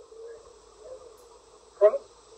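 Pause in an old sermon recording: the recording's faint steady background hum and hiss, with a short spoken syllable near the end.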